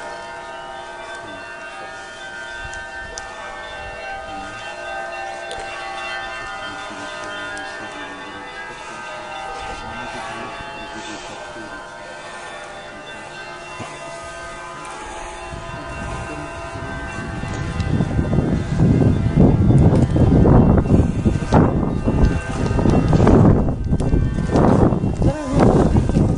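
Orthodox church bells ringing: many steady, overlapping tones. About two-thirds of the way through, a louder, uneven noise comes in over the bells.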